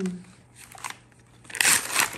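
Gift wrapping paper being torn off a small paperback book: soft rustling, then one short loud rip about one and a half seconds in.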